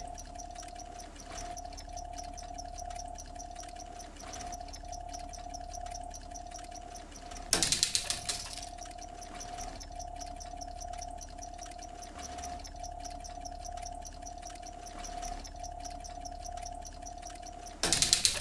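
Synthesized sci-fi electronic drone: a steady tone pulsing about once a second over a low hum. A loud, rapidly stuttering crackle cuts in about halfway through for about a second, and again at the very end.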